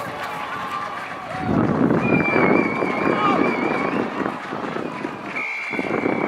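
Referee's whistle blown twice: a long, slightly warbling blast of about two seconds starting about two seconds in, then a second blast starting near the end, stopping play at a tackle. Players and spectators are shouting throughout.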